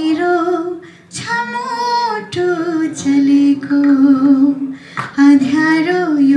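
A woman singing unaccompanied into a handheld microphone, in phrases of long held notes with short breaks about a second in and near five seconds.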